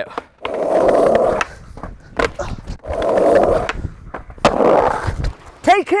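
Skateboard wheels rolling over brick paving in three stretches, with several sharp clacks in between, ending in a fall and a shout near the end.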